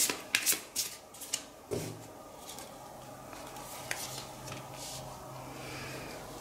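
A tarot deck being shuffled by hand: a quick run of short rubbing card strokes in the first second and a half or so, then only a faint steady low hum.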